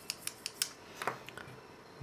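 Small sharp clicks and light scraping from a freshly cleaned motorised audio fader being handled, its slider worked back and forth. The clicks come quickly in the first second, then thin out.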